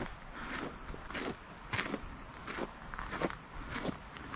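Footsteps crunching on a gravel path as a person walks uphill, about six steady steps, roughly one every two-thirds of a second.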